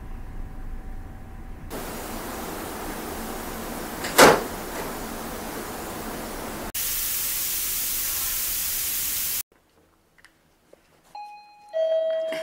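Hiss and rushing noise with a sharp swoosh about four seconds in, then a louder flat static-like noise that cuts off to silence. Near the end comes a two-note ding-dong chime, high then low, from a motion-sensor alarm being set off.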